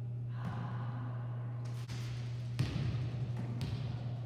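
Volleyballs being set by hand and bouncing on a hardwood gym floor: a series of separate thumps, the loudest about two and a half seconds in. A steady low hum runs underneath.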